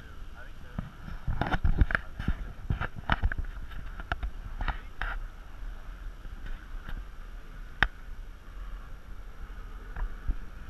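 Wind rumbling on an action camera's microphone, with indistinct voices from the players in the first half. One sharp tap sounds about eight seconds in.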